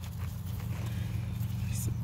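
Tomato plant foliage rustling, with a few light snaps and clicks as leaves and suckers are pulled off by hand, over a steady low hum. A single word is spoken near the end.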